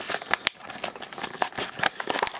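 Hot Wheels plastic blister pack being pried open by hand from its card backing: a steady run of crinkling and crackling with many small sharp clicks.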